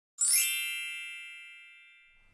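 A bright chime sound effect for a logo reveal, struck once about a fifth of a second in, with several high ringing tones that fade away slowly over about two seconds.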